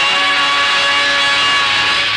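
A loud, sustained full-orchestra chord, the music bridge that closes one scene of the radio play before the next begins. It rises in as the brass phrase before it ends.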